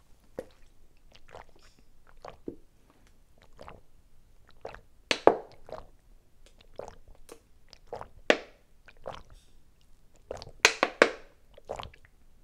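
Someone drinking water from a plastic bottle in long gulps: a string of short, irregular swallowing sounds, the loudest about five seconds in and a cluster near the end.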